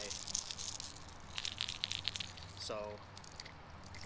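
Hard-plastic topwater walking-bait lures shaken by hand, their internal rattles clicking rapidly in two bursts. Two lures with distinctly different rattle sounds are being compared.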